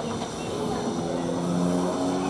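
Narrow-gauge railway locomotive moving slowly at a station: a steady mechanical hum with several held low tones that shift in pitch, the deepest one loudest near the end.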